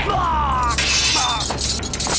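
Heavy iron chain swung and clanking in a staged fight, with sharp metallic crashes, over background music.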